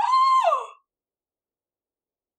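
A woman's brief, high-pitched shocked exclamation, a wordless 'oh' whose pitch rises, holds and then falls, lasting under a second at the very start.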